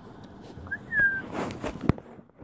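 A puppy gives two short, high, slightly falling whines about a second in, followed by rustling of bedding and a sharp knock near the end as it squirms.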